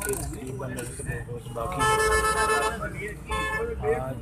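A vehicle horn sounds once, a steady tone about a second long near the middle, over the low rumble of traffic and the ride.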